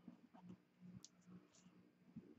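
Near silence: faint scattered clicks and rustles of hands pressing and smoothing glued cardstock, with one slightly sharper click about halfway through.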